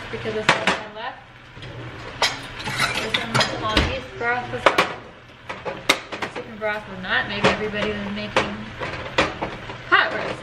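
Hand-held crank can opener clamped onto a tin can and worked, giving irregular sharp metallic clicks and clinks.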